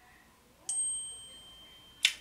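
A single bright ding, struck about two-thirds of a second in, with a clear high ringing tone that fades away over about a second.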